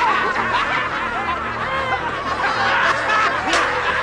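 A group of high, cartoonish goblin voices snickering and cackling together, over quiet background music.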